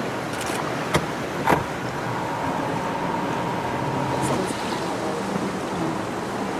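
A small boat's engine running steadily under wind and water noise, with two sharp knocks about a second and a second and a half in.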